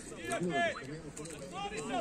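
Indistinct speech: voices talking.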